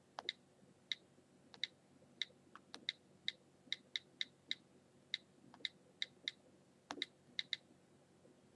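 iPod touch on-screen keyboard key clicks, one short, faint click per key press, about twenty at an irregular typing pace as a short sentence is typed out.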